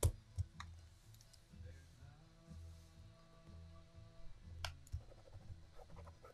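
A few light, sharp clicks and taps from watercolour brushes and a pen being handled: three in the first second, then two close together near the end. Faint background music with long held notes plays underneath.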